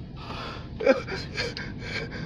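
A person's breathy gasps: a string of short airy breaths with one brief voiced catch about a second in.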